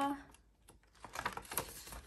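Polymer banknotes and a clear plastic binder envelope crinkling as they are handled, with a run of light crackles and clicks in the second half.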